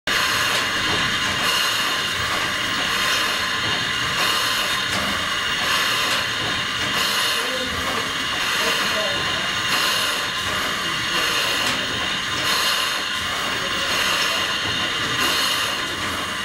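Steam machinery in the engine room of the steamship Bjørn running: a steady steam hiss with a regular beat about every three-quarters of a second from the working strokes of a steam-driven pump.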